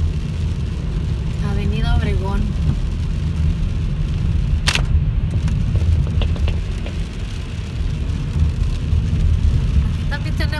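Car cabin noise while driving on a wet road: a steady low rumble of engine and road noise. A brief voice comes about a second and a half in, and a single sharp click near the middle.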